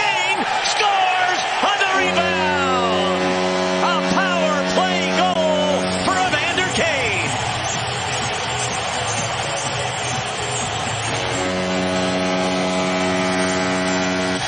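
Arena goal horn sounding two long, deep, steady blasts, the first about two seconds in and lasting about four seconds, the second starting near the end, over crowd noise and music. It signals a home-team goal.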